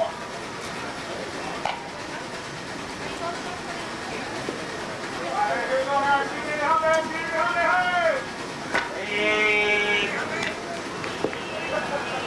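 Shouted voices calling out across a softball field in drawn-out, high-pitched calls, bunched mostly in the second half, with a sharp click near the end.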